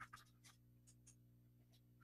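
Near silence: a low steady hum with a few faint, short clicks scattered through it.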